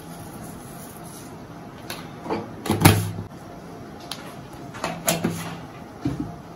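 A few short clinks and knocks of a spoon and spice containers while salt and spice powder are added to a wok of greens, the loudest about three seconds in and another about five seconds in, over a steady low hiss.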